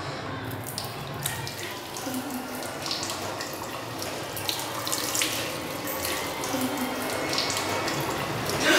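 Water running steadily from a metal faucet into a tiled trough sink, with scattered small clicks and splashes, growing slightly louder toward the end.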